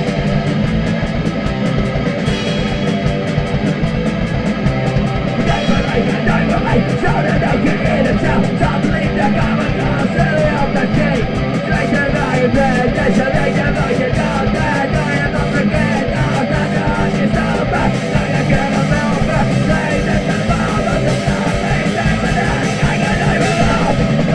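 Hardcore punk song: distorted electric guitar over a fast drum beat, with rapid, evenly spaced cymbal strokes.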